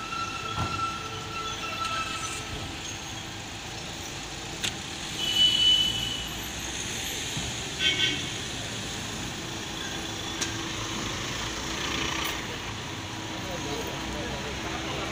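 Mahindra Scorpio SUV engine running as the vehicle rolls slowly forward, over a steady hum of voices. Two short high-pitched tones sound about five and eight seconds in; the first is the loudest sound.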